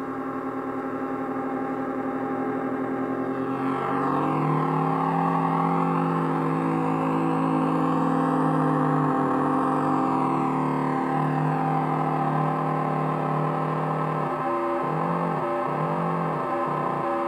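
Electronic instrument built into an orange box with knobs, sounding a thick, sustained drone of layered steady tones. About four seconds in, it gets louder and fuller, with tones gliding slowly up and down over it, and near the end a low warbling figure repeats about once a second.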